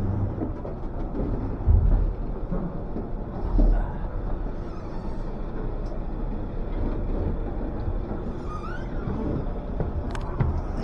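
Steady low rumble of a tender boat's engine running alongside the ship, with water noise. There are two louder low thumps, about two seconds in and again near four seconds.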